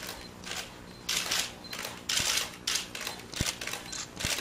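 Camera shutters clicking in short, irregular bursts, several in quick succession, as press photographers take pictures.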